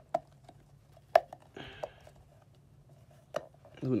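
A few sharp clicks and knocks from handling a SeaSucker bike rack's suction-cup mount, the loudest about a second in, with a brief rustle partway through.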